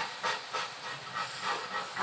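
Meat sizzling in frying pans on portable butane gas stoves, a steady hiss with irregular crackles and spatters.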